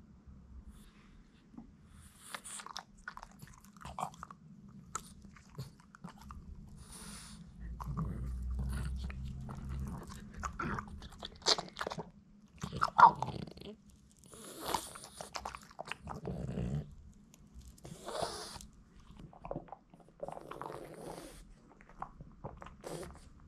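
Boston terrier biting and crunching a hard duck-bone chew treat, in irregular sharp crunches with loud cracks as the hard treat breaks.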